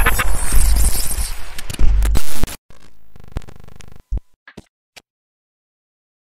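Glitch-style intro sound effects: loud static noise with deep bass for about two and a half seconds, then a short electronic buzz, a few clicks, and silence.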